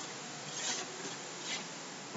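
Chalkboard duster rubbed across a blackboard, wiping off chalk: faint rubbing strokes that swell slightly twice, under a second in and again about one and a half seconds in.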